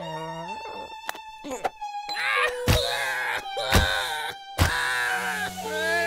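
A cartoon character wailing and sobbing in exaggerated cartoon crying, the pitch sliding and wavering, broken by a few sharp sudden sounds near the middle.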